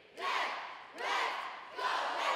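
A cheerleading squad shouting a cheer in unison: three loud shouted calls, about a second apart.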